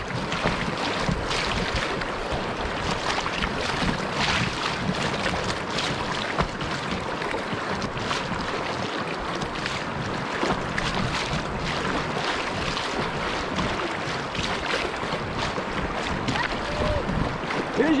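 Choppy river water rushing and splashing around a kayak's hull as it rides a fast, rough current, with wind on the microphone.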